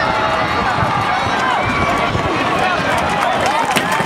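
Stadium crowd of many voices shouting and calling out at once as a football play runs, with one sharp crack near the end.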